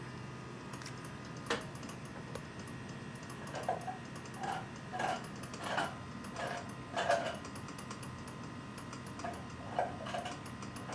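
Hand-built magnetic wheel generator turning, giving a steady run of light ticks about four to five a second, joined about a third of the way in by a softer knock roughly every two-thirds of a second, over a faint steady hum.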